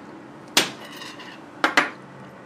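Tableware clinking on a table: a sharp ringing knock about half a second in, then two quick clinks close together near the end.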